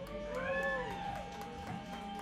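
Short whoops that rise and fall, from one or two voices, as a song ends, over a steady low amplifier hum.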